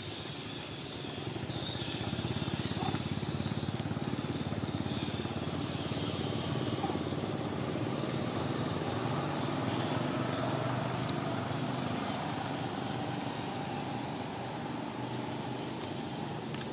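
A motor running steadily with a low, even drone that grows a little louder about two seconds in.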